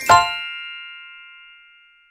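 Closing note of a short intro jingle: one bell-like chime struck just after the start, ringing on and fading away over about two seconds.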